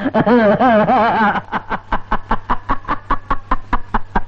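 Loud, rapid laughter in quick even bursts, about five a second, with a wavering, drawn-out stretch of laugh about a second in.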